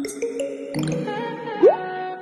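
Channel-intro jingle: short pitched notes and cartoon-like sound effects, with a quick rising glide about one and a half seconds in, the loudest moment.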